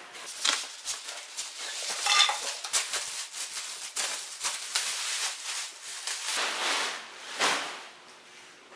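Clear plastic wrap crinkling and a cardboard box rustling as a boxed steel tool chest is unpacked: a dense run of irregular small crackles and scrapes, louder about two seconds in and again near the end.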